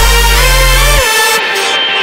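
Background electronic dance music with a heavy bass line and gliding synth notes. About a second in the bass drops out, and near the end the top end is filtered away, as in a transition between sections.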